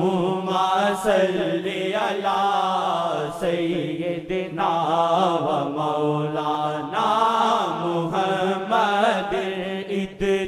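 A naat being sung as Islamic devotional chanting: a melodic voice line that runs on unbroken, over a steady low held drone.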